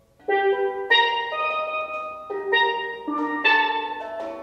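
Double second steel pans played after a brief pause: about half a dozen struck chords, each ringing out and fading before the next.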